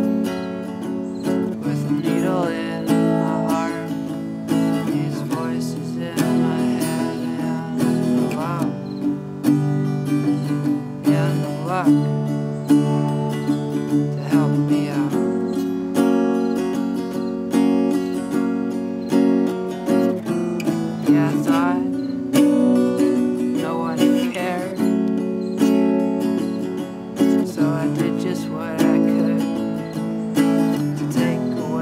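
Acoustic guitar played solo, strummed chords ringing with regular strokes and the chord changing every few seconds.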